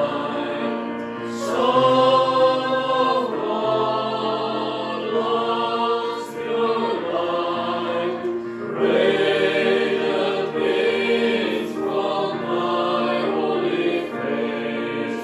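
Mixed choir of men's and women's voices singing a hymn in parts, in sustained phrases, accompanied by an electronic keyboard.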